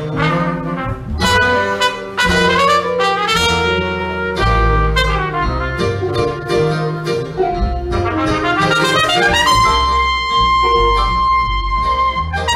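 Trumpet playing an improvised jazz line over upright bass. Near the end it slides up into a long held high note.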